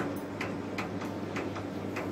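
Light, sharp clicks from a plastic water bottle as its cap is twisted and the bottle is gripped, about four or five in two seconds at uneven spacing.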